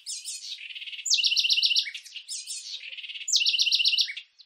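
A songbird singing: high-pitched chirps and two fast trills of rapidly repeated notes, the first about a second in and the second near the end.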